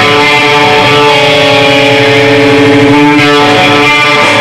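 Loud amplified electric guitars of a live rock band holding a sustained chord, moving to a new chord about three seconds in.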